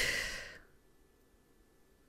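A woman sighing: one breathy exhale, fading out about half a second in.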